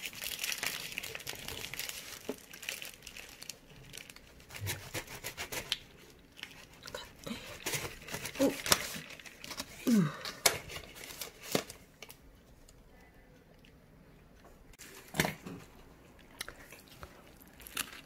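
Paper burger wrapper crinkling and rustling as a burger is handled and its bun pressed down by hand, followed by scattered light clicks and knocks of handling.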